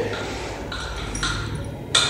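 Pause in a small classroom: steady low room hum, with faint thin high tones ringing through the second half.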